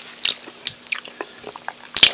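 Close-miked chewing of a saucy chicken wing: an irregular run of short, wet mouth clicks and smacks.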